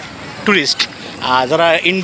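Speech: a person talking, starting about half a second in after a brief pause.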